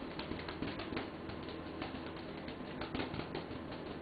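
Quick, irregular light taps and pats, several a second, as a pink object is patted and brushed over a bare back during a massage.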